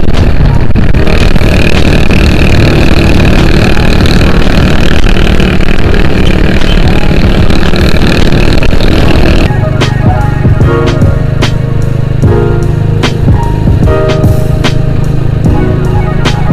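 Heavy wind noise on the microphone of a motorcycle ridden fast, over the engine's running. About nine seconds in it cuts to background music with a steady beat.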